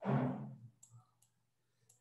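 A short breathy sound, then a few light, sharp clicks from a computer mouse scroll wheel as a document is scrolled down.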